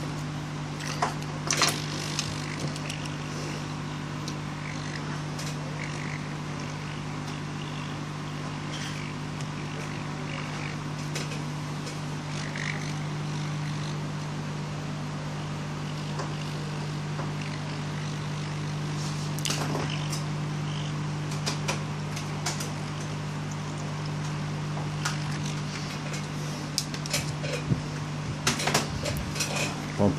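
Hot-air rework gun blowing steadily, a constant fan hum with a hiss, heating a phone's SIM card connector at around 400 °C to melt its solder for removal. A few light clicks come through over it.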